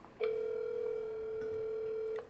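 Telephone ringback tone: one steady tone about two seconds long, an outgoing call ringing and not yet answered.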